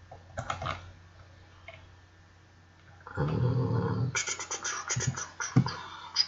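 Computer mouse and keyboard clicks, a few just under a second in and a quick run of them in the last two seconds. About three seconds in, a loud breath through a stuffy nose.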